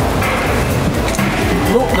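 Background music, with a man's voice starting near the end.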